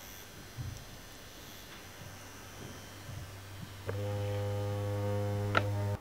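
Vibrating dildo's motor buzzing: faint at first, then a steady, louder buzz from about four seconds in that stops just before the end.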